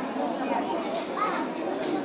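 Many children talking and calling out at once: a steady crowd chatter of young voices.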